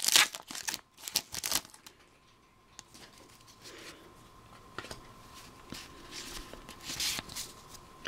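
Foil Pokémon TCG booster pack wrapper crinkling and tearing for about the first two seconds, then faint rustling and sliding of the trading cards being handled.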